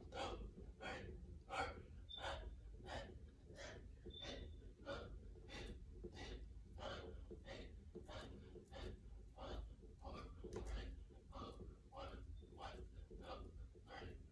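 A man breathing hard and rhythmically while doing push-ups, with quick breaths about twice a second.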